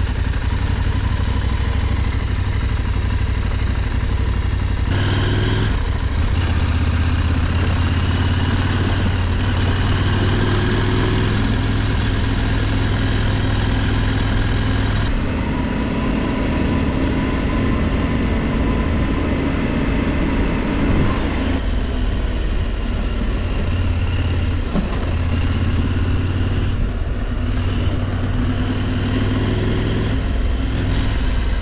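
KTM parallel-twin adventure motorcycle engine running under way, with wind rushing past. The engine note shifts about five seconds in, again near the middle and a few seconds later.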